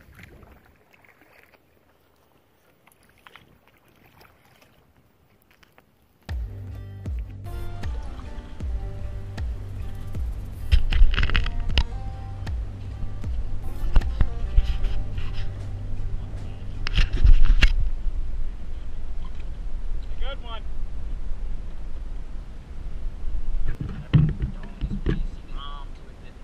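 After about six seconds of near silence, a steady low rumble of wind buffeting the camera microphone sets in and rises and falls in gusts. Several sharp knocks and handling noises from the canoe come through it.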